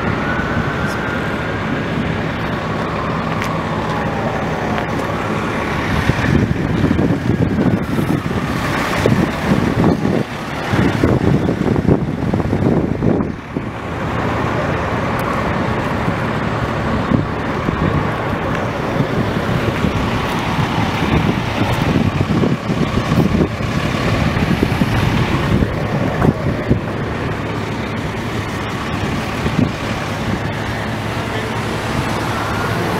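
An emergency-vehicle siren wailing faintly and dying away in the first few seconds over a steadily idling engine, then road traffic noise with uneven rumbling from about six seconds in.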